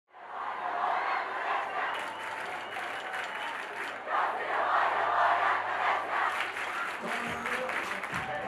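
Crowd cheering and shouting, swelling about halfway through.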